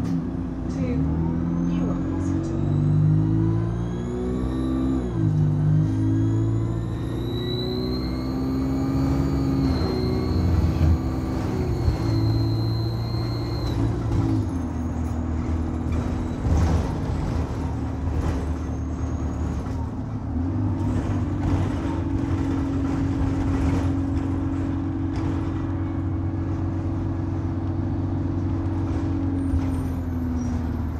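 Turbocharger whine of a Stagecoach Alexander Dennis Enviro200 diesel bus heard from inside the saloon: a high scream that rises and holds as the bus pulls away and accelerates, with the engine note stepping up underneath. The whine cuts off about fourteen seconds in, and the engine then runs on more steadily, rising again and dropping back near the end.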